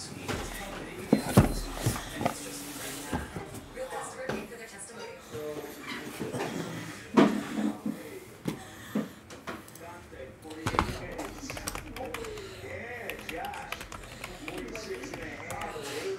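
Several knocks and thumps of a cardboard case being handled and set down on a table, the loudest about seven seconds in, over steady background speech.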